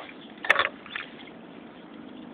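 A single sharp click about half a second in, followed by a brief faint pitched sound, from steel forceps and a small plastic sample vial being handled while the shad's otoliths are stored; a steady faint hiss of outdoor background lies under it.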